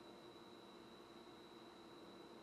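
Near silence: faint steady room tone and hiss with a thin, steady high-pitched tone.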